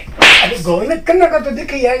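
A single loud slap to a man's face just after the start, followed by his voice crying out.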